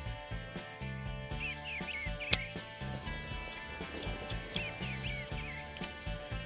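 Background music with a steady low beat. About two seconds in comes a single sharp click: a Dardick pistol's hammer falling on an almost 50-year-old round that fails to fire.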